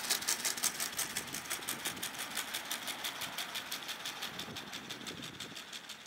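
Quad A1 quadruped robot walking on a paved path: a fast, even ticking, roughly nine a second, that fades as the robot moves away.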